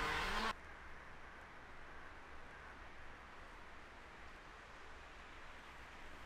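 Faint outdoor ambience: a quiet, even background hiss with no distinct events. It follows a steadier, louder sound that cuts off abruptly about half a second in.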